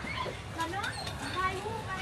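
Quiet background chatter of several people's voices, some of them high-pitched, over a low steady hum of outdoor bustle.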